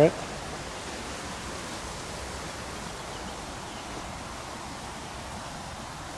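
Steady, even rushing of a river flowing.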